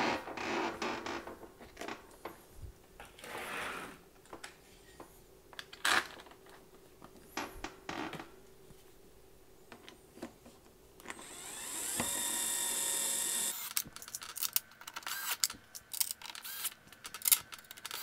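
Cordless power screwdriver driving screws into a dishwasher door panel: one steady high-pitched whir of about two and a half seconds, a little past halfway. Around it, knocks and clicks of the panel being handled, with a quick run of sharp clicks near the end.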